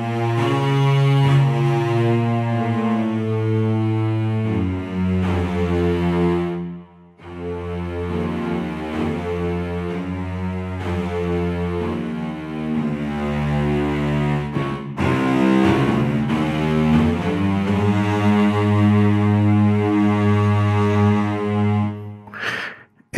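Soundiron Hyperion Strings Micro cello section, a sampled virtual instrument, playing slow legato phrases of sustained notes with the expression (swell) and vibrato blend controls being ridden. The playing breaks off briefly about seven seconds in.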